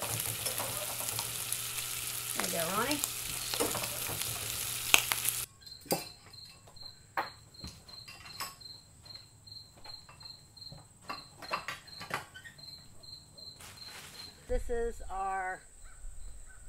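Bacon and eggs sizzling in frying pans. About five seconds in the sizzle cuts off, and a much quieter stretch follows with a high insect chirp repeating about twice a second, like a cricket, and a few scattered clicks.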